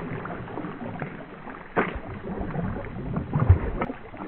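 Water splashing and sloshing as a Boston Terrier paddles through a pond, with a sharp splash about two seconds in and a low thump shortly before the end.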